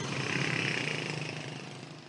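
Road traffic noise with vehicle engines running, fading out steadily toward the end.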